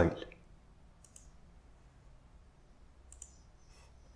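A few faint computer clicks over near silence, one about a second in and several more around three seconds in, as the file is saved.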